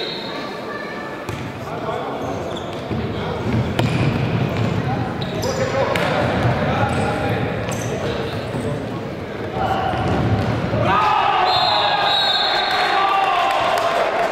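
Indoor futsal play in a sports hall: the ball being kicked and bouncing on the wooden court, with a few sharp knocks, under players' echoing shouts. The shouting gets louder from about three seconds before the end as the attack reaches the goal.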